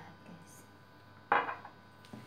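A single sudden clatter of kitchenware about a second and a half in, dying away within half a second.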